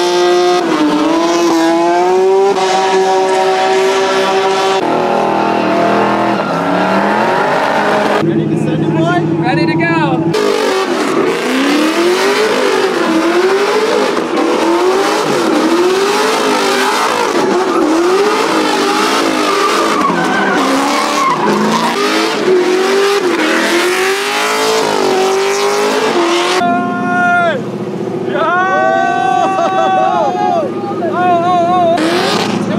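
Drift car engines revving hard with tyre squeal. First an engine is held at high revs through a burnout. Then, after a couple of abrupt cuts, the throttle is pumped so the revs rise and fall about once a second as a car slides.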